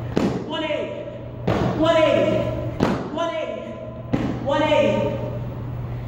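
Feet landing on a gym floor four times, about 1.3 seconds apart, from jump turns. Each thud is followed by a short voiced sound, with a steady low hum underneath.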